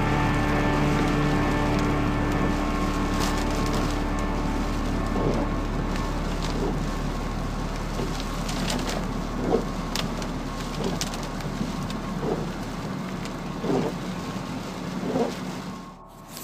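Rain on a moving car, an even hiss with scattered drop clicks, as held music notes fade out over the first few seconds. A short squeak recurs about every one and a half seconds.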